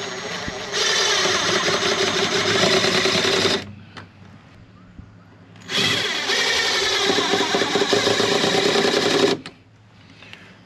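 Ryobi cordless drill running twice into a wooden block, each run about three seconds long with a steady motor tone, with a short pause between them.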